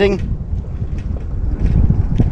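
Wind buffeting the microphone: a low, gusty rumble that swells near the end.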